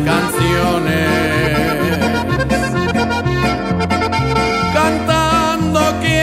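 Instrumental passage of a norteño-style ranchero song: an accordion plays the melody over guitar and a steady, stepping bass accompaniment.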